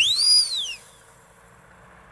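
A single whistle-like swoop sound effect, its pitch rising steeply and falling back within less than a second. Only faint background noise follows.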